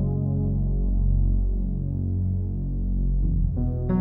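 Soft background music of slow, sustained low chords, with a new, brighter chord coming in near the end.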